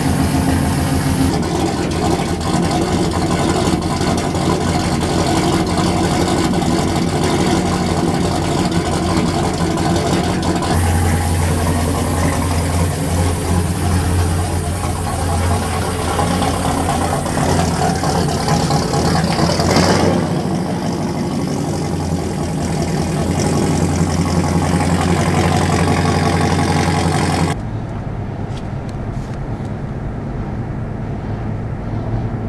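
A pickup truck's engine running and pulling away, with several abrupt changes in the sound. About two and a half seconds before the end it gives way to the quieter hum of a car driving on the road, heard from inside the car.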